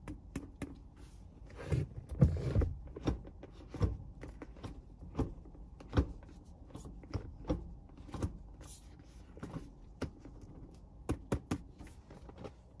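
Short-throw shifter in a Honda S2000's six-speed manual gearbox being moved by hand through the gates: a run of irregular clicks and clunks as the lever engages each gear.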